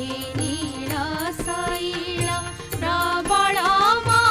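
Odia devotional bhajan music: a bamboo flute plays an ornamented melody over a steady harmonium drone, with regular drum strokes underneath.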